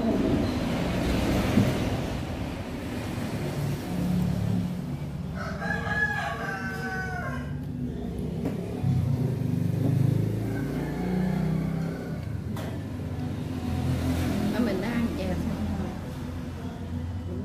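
A rooster crows once, a call about two seconds long starting about five seconds in, over a steady low background rumble.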